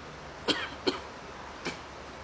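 A person coughing three short times, the first two close together and loudest, the third softer a moment later.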